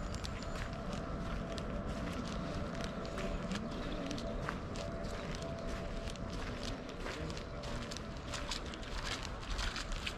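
Footsteps walking along a wet, muddy path: a run of irregular soft clicks over a steady outdoor hiss.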